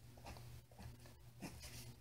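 Pen scratching faintly across paper in several short drawing strokes.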